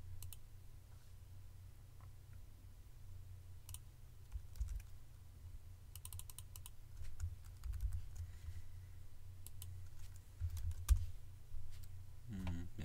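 Sparse clicks and taps of a computer keyboard and mouse, a few at a time with pauses between, over a low hum; a louder knock comes near the end.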